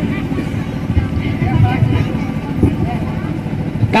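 Steady low rumble with faint voices behind it.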